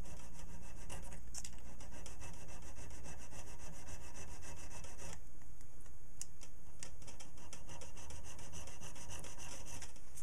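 Small needle file rasping back and forth on a piece of brass held in a vise, filing out a narrow slot in quick, even strokes. There is a short let-up about halfway through.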